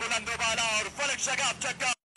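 Speech only: a cricket commentator talking quickly and without pause, cut off suddenly near the end.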